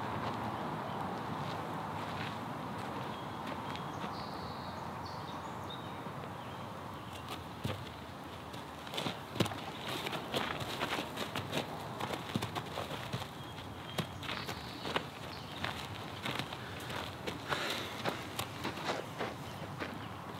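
A horse's hooves and a person's feet stepping and scuffing on sandy gravel ground, as irregular steps that start about seven seconds in, over a steady outdoor background hiss.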